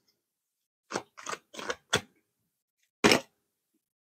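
Tarot deck being handled: a quick run of short, soft card clicks and rustles between about one and two seconds in, then one louder snap just after three seconds as a card is pulled from the deck.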